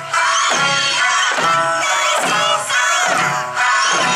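Eisa drum dance: large barrel drums and small paranku hand drums struck together in a steady beat, about two strokes a second, with many voices shouting rhythmic calls over Okinawan folk music.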